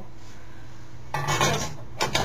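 Metal rattling and clinking as hands handle parts inside a steel fire alarm control panel cabinet, starting about a second in, over a steady low hum.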